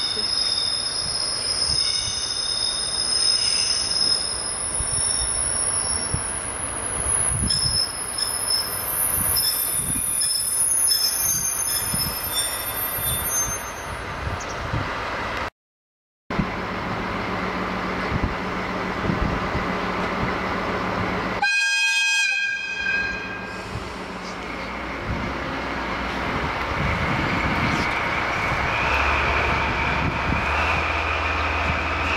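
Diesel-hauled train of old passenger coaches braking into a station with a high, steady wheel and brake squeal. After that, the diesel locomotive idles with a steady low hum, sounds one short horn blast of about a second a little after halfway, and its engine begins to rev up near the end.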